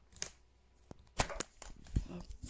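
Handheld phone being moved about: a few short knocks and rustles of handling noise, the sharpest about a second in and at the very end.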